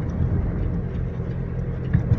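Engine and road noise of a moving car heard from inside the cabin: a steady low hum, with one short knock near the end.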